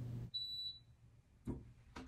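Dunlop swingweight machine giving a single electronic beep, a steady high tone about half a second long, as it finishes a swing-weight measurement. A faint click follows about a second later.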